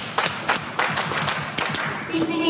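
Hand clapping in time with a song, sharp claps repeating a few times a second between sung lines.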